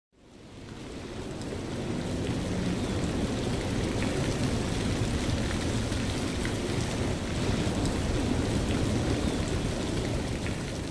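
A steady, even rushing noise like rain, fading in over the first two seconds, with a faint low hum beneath it.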